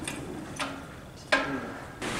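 Hand lever of a hydraulic bottle-jack shop press being pumped: two sharp metallic clicks about three-quarters of a second apart, the second one louder and briefly ringing. The jack is being pumped to press the pipe roller's dies in for a tighter bend.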